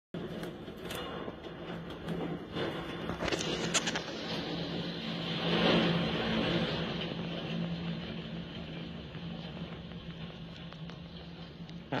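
Storm-force wind gusting hard, with knocks and clatter of roofing and debris being torn loose, swelling loudest about halfway through as the building's roof is ripped away, then easing. A steady low hum runs underneath.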